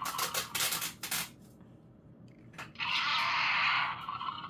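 A plush dinosaur toy's built-in sound effect, a rough unpitched roar lasting about a second, set off by squeezing; clicks and rustling of the toy being handled come in the first second, and the roar plays again about three seconds in.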